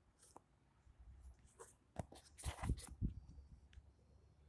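Faint handling noise of a survey pole with a GNSS receiver on top being raised: scattered light clicks and knocks, busiest about two to three seconds in.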